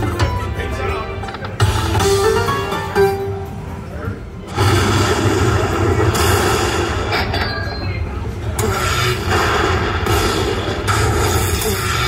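Slot machine bonus music with a Middle Eastern-style melody, and about four and a half seconds in a louder win-celebration sequence with booming effects while the bonus win counts up.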